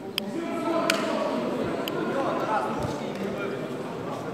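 Voices calling out over a grappling match, rising in level from about a second in, with three sharp clicks during the first two seconds.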